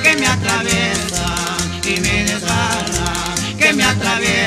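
Ecuadorian sanjuanito music: an instrumental passage with a wavering accordion melody over strummed guitars, a steady bass beat and a shaker ticking in time.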